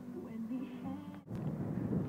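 Wind buffeting a phone's microphone outdoors: a rough, uneven rumble that starts abruptly about a second and a quarter in. Before it there is only a faint background of the car interior.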